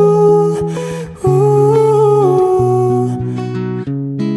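Male voice singing a wordless "ooh" line over acoustic guitar. The voice slides between held notes and fades out about three seconds in, leaving the guitar playing on.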